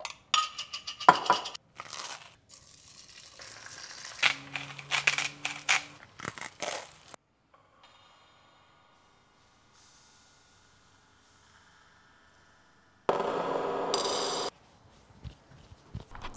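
Knife scraping and crunching across toast in a run of quick scrapes and clicks, with a brief low hum partway through. After a quiet stretch comes a loud burst of noise of about a second and a half that cuts off suddenly.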